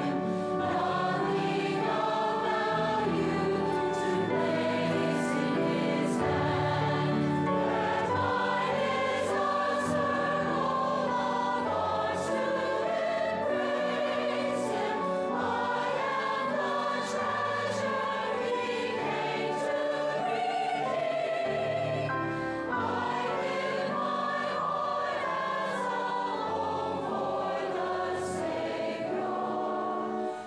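Large mixed adult choir singing in held, sustained notes, the harmony shifting every second or so.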